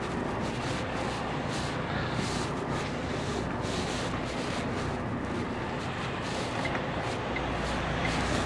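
HGV diesel engine running steadily at low revs, heard from inside the truck's cab.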